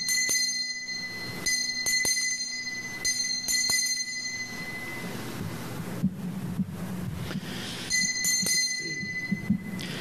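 Altar bell rung for the elevation of the chalice at the consecration. It sounds in several ringing shakes over the first four or five seconds, then again briefly about eight seconds in.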